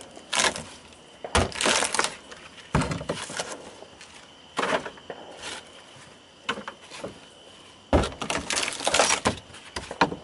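Rotten wooden floor in a fiberglass boat hull being broken up and torn out: irregular cracks, crunches and knocks of splintering wood, busiest near the end.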